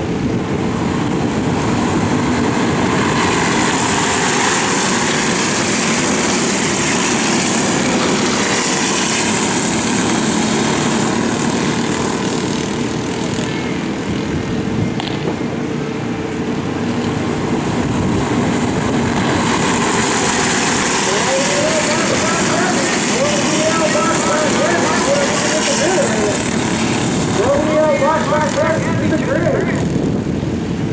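Racing kart engines running flat out on track, a steady buzzing drone mixed with wind noise. A voice is heard over it in the second half.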